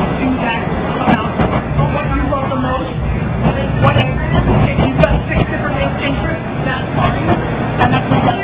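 A man talking in a noisy room, his voice blurred together with background chatter over a steady low rumble. It is picked up by a phone's microphone, which sounds muffled and cuts off the treble.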